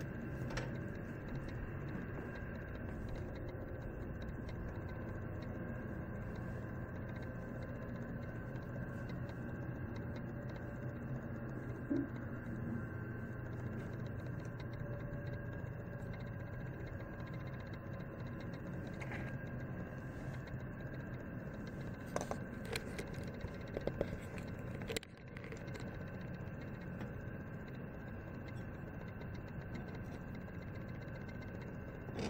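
Steady low background hum, with a few light clicks and taps in the last third.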